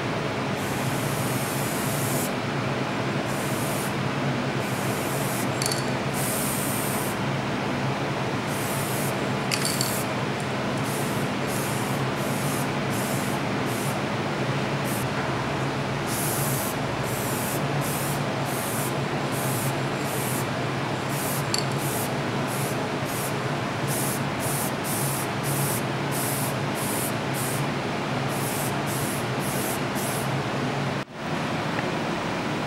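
Spray.Bike aerosol paint can spraying in on-off bursts, hissing over a steady low hum: a few long bursts at first, then many short ones in quick succession from about halfway.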